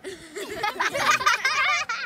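A group of young girls laughing and giggling together, several high voices overlapping.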